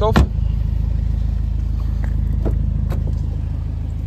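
A BMW M135i's turbocharged four-cylinder engine idling with a steady low hum. A single thump comes about a quarter-second in, followed by a few faint clicks.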